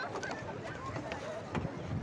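Faint, indistinct voices of people nearby over steady outdoor background noise, with no single loud event.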